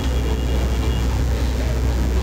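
A steady low hum with constant background noise and faint, indistinct voices far off.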